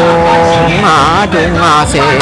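A voice singing a Mường folk song (hát Mường): a long held note, then a wavering, ornamented phrase about a second in.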